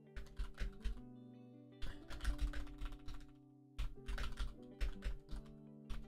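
Computer keyboard typing: three quick runs of keystrokes with short pauses between them, over steady background music.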